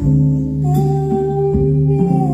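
Live jazz group playing a slow bolero: archtop guitar chords, double bass and light drums, with a long held melody note that begins a little under a second in.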